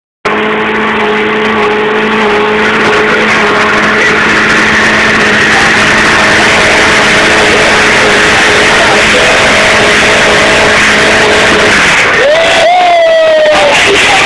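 Vauxhall Corsa SRi's four-cylinder petrol engine held at a steady high rev during a stationary burnout, with the spinning tyres hissing and squealing underneath. About twelve seconds in the engine note cuts off abruptly as the car dies.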